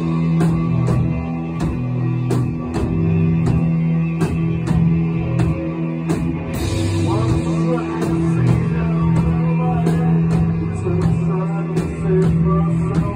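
Live rock band playing: electric guitars and bass holding long, sustained notes over a steady drum beat.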